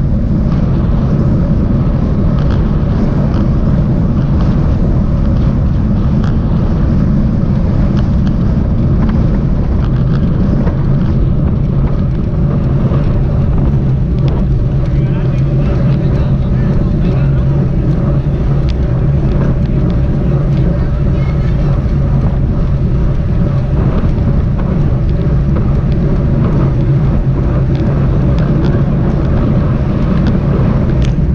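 Loud, steady wind rumble on a bicycle-mounted action camera's microphone while riding at race speed, mixed with tyre and road noise and occasional light clicks.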